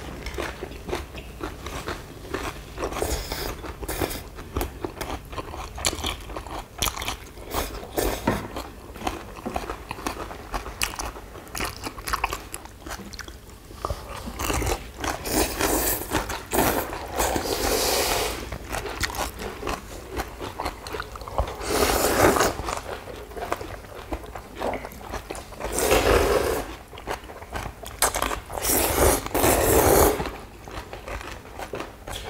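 People eating spicy cold noodles close to the microphone: constant wet chewing and crunching clicks, with several long, loud slurps of noodles, most of them in the second half.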